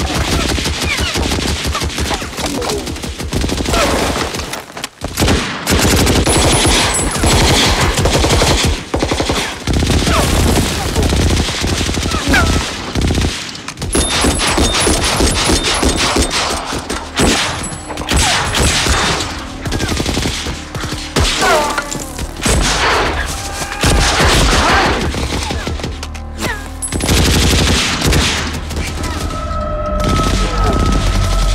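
Heavy battle gunfire from a war-film soundtrack: dense, continuous machine-gun and rifle fire, with a brief lull about five seconds in and another about thirteen seconds in.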